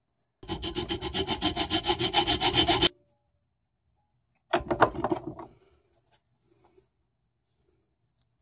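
Hacksaw cutting through a metal rod clamped in a vise, in quick, even strokes for about two and a half seconds. A second, shorter burst of sound follows about four and a half seconds in.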